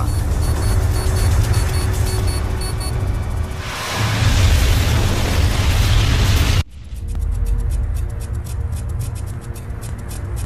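Dramatic documentary music over a deep earthquake rumble. About four seconds in it swells into a loud roar that cuts off suddenly just before seven seconds, leaving a quieter stretch with rapid ticking.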